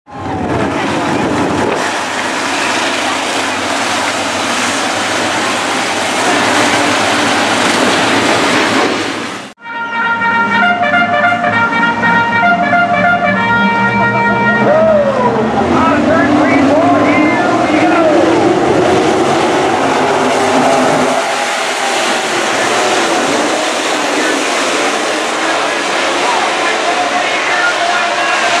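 A pack of IMCA Sport Mod V8 race cars running on a dirt oval, engine pitch rising and falling as the field comes up to speed. About ten seconds in, after a brief dropout, a few seconds of steady musical tones sound over the engines.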